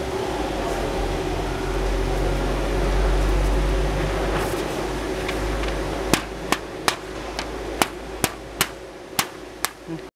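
Fingers flicking a sheet of plotter paper: about nine sharp paper snaps, a few tenths of a second apart, in the last four seconds, popping out the pattern pieces that the cutter plotter has cut through. Before them a steady low rumble runs.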